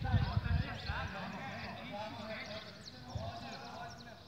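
Indistinct voices chattering at a distance, with a low rumble on the microphone in the first half second.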